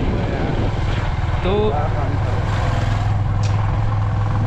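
Motorcycle engine running steadily while riding, a constant low hum of rapid firing pulses, heard from on the bike.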